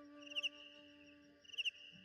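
Faint cricket chirping in a pause of the flute music: two short, pulsed high chirps about a second apart, over a faint sustained low tone.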